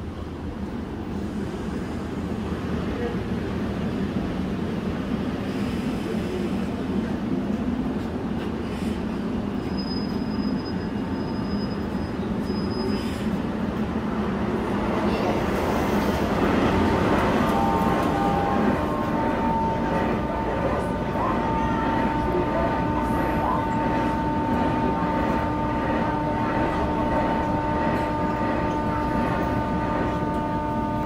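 Korail Line 1 electric train pulling into the platform, getting louder as it brakes, with a brief thin high squeal about ten seconds in. Once it has stopped, a steady whine from the standing train runs on through the door opening.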